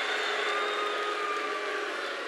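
Large rally crowd cheering and shouting in a hall, a steady mass of voices with one long held shout standing out above it.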